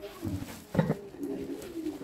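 A dove cooing in low, held notes, with a short knock a little under a second in.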